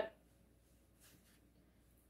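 Near silence: quiet indoor room tone, with one faint, brief rustle about a second in.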